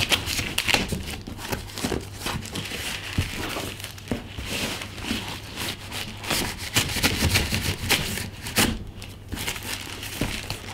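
A knife slitting open a duct-taped plastic mailer, with the plastic and tape crinkling and tearing as it is pulled apart. The sound is a continuous run of irregular scratchy crackles and rips.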